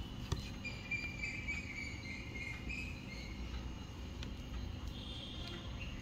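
Faint steady background noise with soft, high-pitched chirping tones in the background, and a couple of light clicks in the first second.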